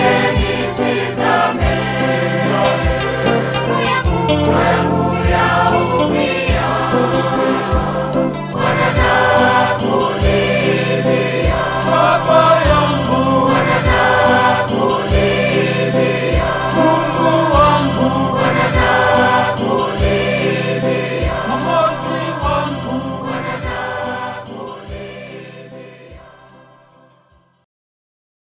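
Church choir singing a Swahili gospel song over a backing track with a bass line and a steady drum beat; the music fades out near the end.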